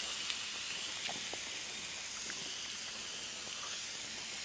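Zucchini and yellow squash noodles sizzling in butter and olive oil on a Blackstone flat-top griddle: a steady hiss with a few small pops.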